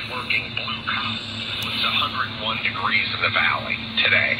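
Ebright pocket radio playing an AM talk broadcast on 560 through its small speaker: a continuous announcer's voice, thin and cut off in the treble, with a steady low hum under it. The station is received clearly.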